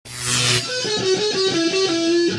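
Electric guitar starts suddenly with a bright noisy crash, then plays a fast run of single lead notes.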